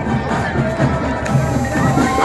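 Marching band flutes playing a tune in long held notes, over the chatter of a large outdoor crowd.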